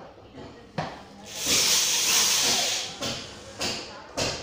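Corded electric drill running once for about a second and a half, driving a screw into the underside of a chair seat, with a short click just before it.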